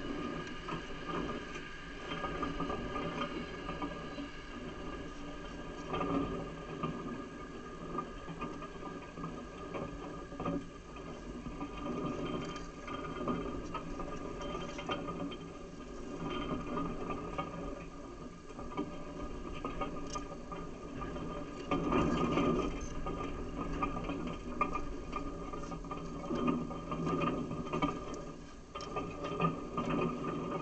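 A steady mechanical hum and whirr with a grainy, ratchet-like texture, broken by scattered faint knocks and a louder swell about two-thirds of the way through.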